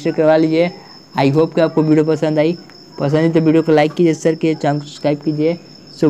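A man speaking in Hindi in three short stretches with brief pauses, over a faint steady high-pitched whine.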